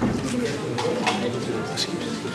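Indistinct murmur of voices in a large hall, with a few sharp clicks.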